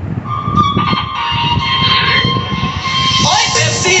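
A Movie Star 4.1 home theatre speaker set playing music from a phone: a long held chord, then a rising sweep about three seconds in as the beat of the song comes in.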